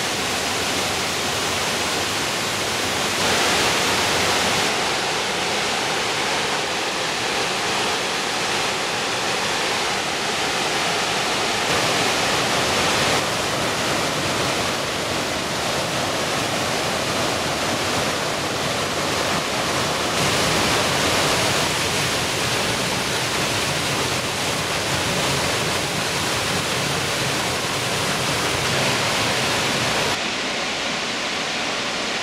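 Steady rush of a rocky creek's cascades, water pouring and splashing over boulders, its level stepping slightly up and down a few times.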